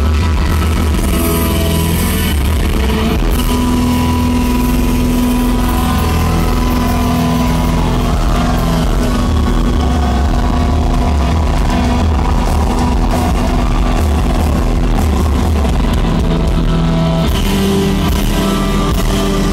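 Hard rock band playing loud live: distorted electric guitars with sustained notes over drums and bass, no vocals, heard through a PA.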